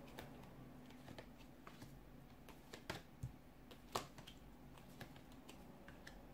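Tarot cards being dealt and laid down on a table one after another: faint soft taps and flicks of card on card, with a few sharper clicks about three and four seconds in.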